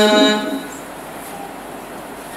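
A singing voice holds a long, steady note that ends about half a second in, its echo fading away. Then comes a pause with only faint hiss.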